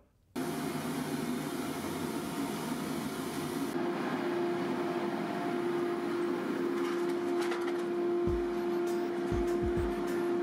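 A machine running steadily, with a constant hum that comes in about four seconds in. A few low thumps follow near the end.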